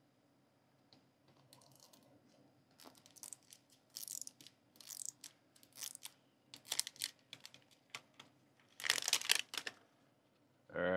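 Plastic film wrapper being peeled and torn off a Zuru Mini Brands capsule ball: a run of short rips and crinkles starting about three seconds in, the loudest burst near the end.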